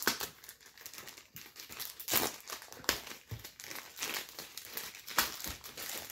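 Plastic bag wrapping around a bundle of comic books crinkling as the comics are handled, in irregular crackles and rustles.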